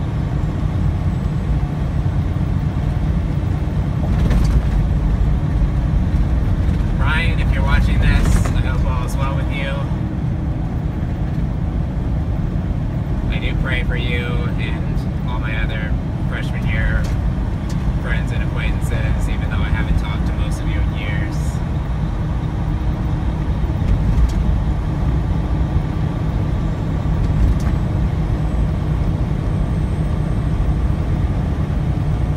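Steady low rumble of engine and road noise inside a tractor-trailer cab cruising at highway speed.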